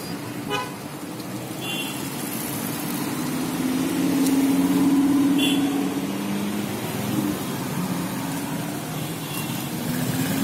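A Lamborghini supercar engine running low in pitch as it drives past. It grows loudest about four to five seconds in, then fades. Brief horn toots from the surrounding traffic come twice.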